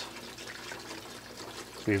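Green cleaning solution pouring in a steady stream from a plastic jug into the stainless steel tank of an ultrasonic cleaner, filling it up.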